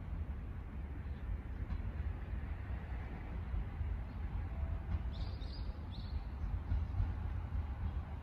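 Low, steady rumble of an approaching Keiyo Line E233 series electric train, still some distance off. Three short high chirps, likely a bird, come about five seconds in.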